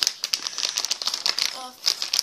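Plastic toy packaging crinkling in quick, dense crackles as it is handled and gripped to be opened.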